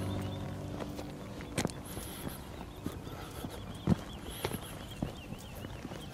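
Footsteps on stony ground: a few scattered, irregular knocks and scuffs over a quiet outdoor background.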